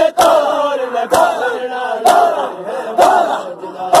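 A crowd of male mourners chanting a lament together while beating their chests (matam) in time, with one sharp slap about every second keeping the rhythm.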